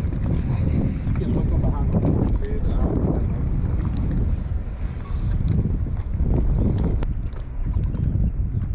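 Wind buffeting the microphone: a steady, uneven low rumble, with a few faint ticks.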